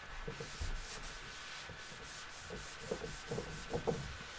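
A handheld whiteboard eraser wiping a dry-erase board in repeated short rubbing strokes, with a few soft knocks of the eraser against the board.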